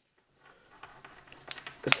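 Faint handling noise from a hard plastic knife sheath and the ESEE-5 knife in it: soft rustling with a small tick about one and a half seconds in, after a brief near-silent start.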